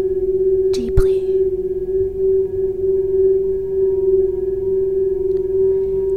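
Crystal singing bowls sustaining one steady, unbroken note, with fainter higher steady tones layered above it. A brief soft breathy voice sound comes about a second in.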